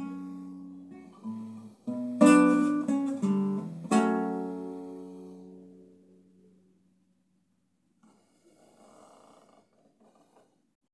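Nylon-string classical guitar playing the closing bars of a song: a few plucked notes and chords, then a final chord struck about four seconds in and left to ring until it dies away. A faint rustle near the end.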